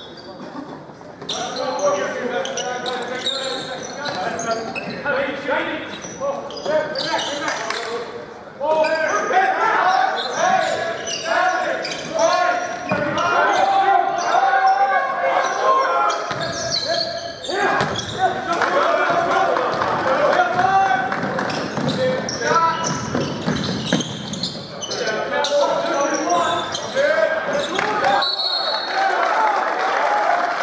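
A basketball bouncing on a hardwood gym floor during play, amid the chatter and shouts of players and spectators echoing in a large hall; the voices grow louder about nine seconds in.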